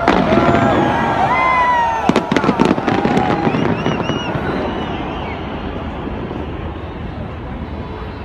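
Fireworks: whistling shells gliding up and down in pitch, and a quick run of sharp cracks about two seconds in, then a hiss that slowly fades.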